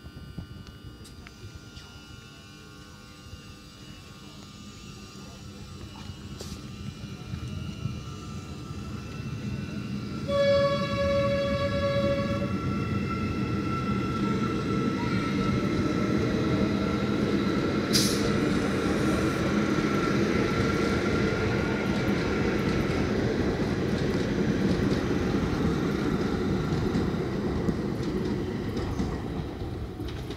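Škoda EJ675 double-deck electric train approaching and passing on the adjacent track: the rumble of its wheels on the rails builds over the first ten seconds. A train horn sounds for about two seconds, then the loud passing rumble, with a high steady whine above it, holds for over fifteen seconds and fades near the end.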